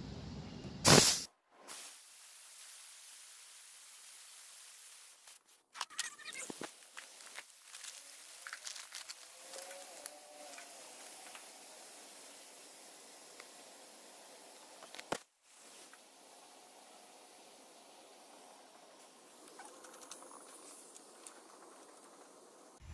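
Pressurised nitrogen hissing out of an air-conditioning system through the gauge manifold hoses, as the pressure-test charge is released before evacuation. A loud brief burst about a second in, then a steady hiss broken off briefly a few times.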